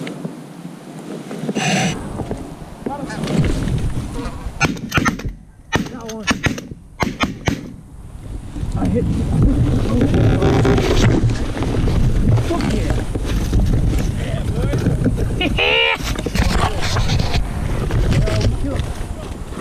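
Shotgun shots fired in quick succession a few seconds in, with the sound cutting out between blasts. From about halfway on comes steady wind buffeting and fabric rustling as a hunter climbs out of a layout blind.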